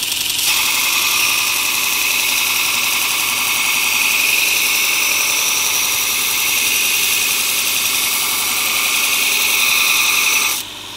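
Robert Sorby ProEdge belt sharpener grinding a plane iron held in its jig against the abrasive belt: a steady, high grinding hiss over the running motor. The hiss rises about half a second in and holds evenly.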